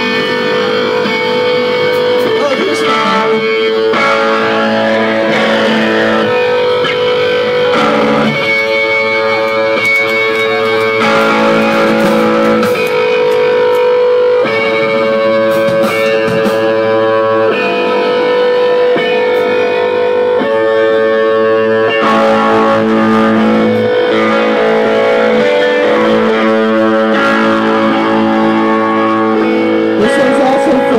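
Live rock band playing: electric guitars ringing out chords that change every couple of seconds, over bass and drums with cymbals.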